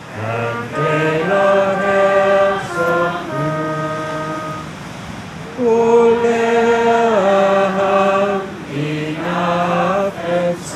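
Voices singing a slow hymn melody in long held notes that step from pitch to pitch, with short breaks between phrases.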